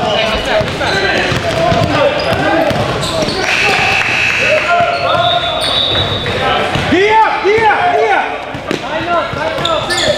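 Basketball being dribbled on an indoor court during a game, with players and spectators calling out and short high squeaks of sneakers on the floor, all echoing in a large gym hall.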